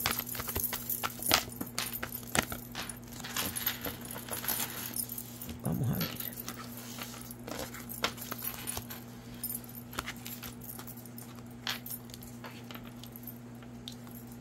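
Tarot cards being shuffled and laid out: scattered light clicks and snaps over a steady low electrical hum, with a brief low sound about six seconds in.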